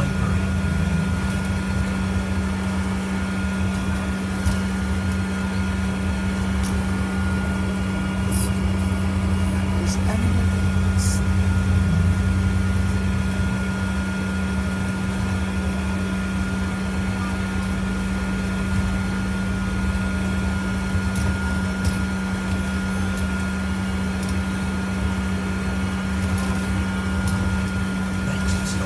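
Inside a double-decker bus on the move, heard from the upper deck: a steady drone and low rumble from the drivetrain and road, with a thin steady whine above it and a few light rattles.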